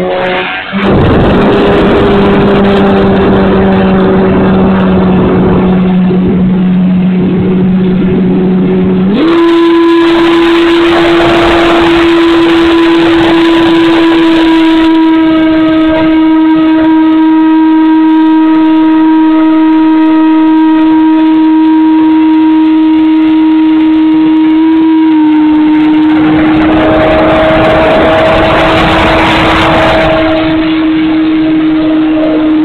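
Electric motor and propeller of an E-flite Pitts S-1S RC biplane, heard from a camera on the plane: a loud, steady whine that jumps to a higher pitch about nine seconds in and holds there. Rushing wind noise on the microphone swells in the middle and again near the end.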